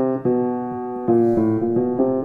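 Upright piano playing a slow run of chords, a new chord struck about every half second and each ringing on into the next.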